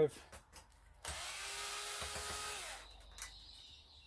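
Old Bosch cordless drill backing out the hard drive caddy screw. Its motor runs steadily for nearly two seconds from about a second in, then its pitch drops as it winds down, followed by a few faint ticks.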